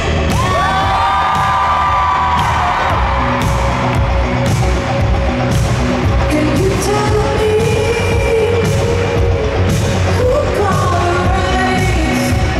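Live pop song played over an arena sound system: a woman sings long held notes into a handheld microphone over a band with a steady beat and heavy bass.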